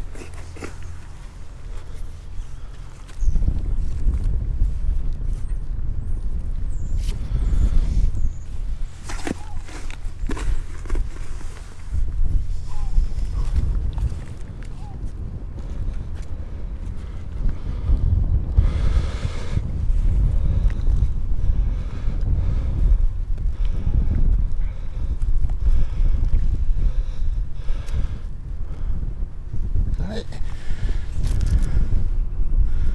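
Wind buffeting the microphone: a steady low rumble that gets much louder about three seconds in. Occasional short, sharp knocks and scrapes sound over it.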